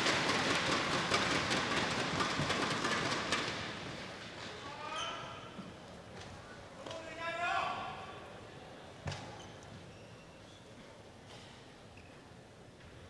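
Arena crowd applauding a won point in a badminton hall, the applause dying away over the first few seconds. Then a couple of short high-pitched squeaks and one sharp knock about nine seconds in, over a low hall background.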